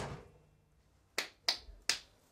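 Three sharp finger snaps, about a third of a second apart, in the second half, after the end of a loud thump dies away at the start.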